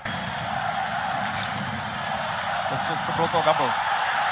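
Steady crowd noise filling an ice hockey arena, starting suddenly, with a brief word of commentary near the end.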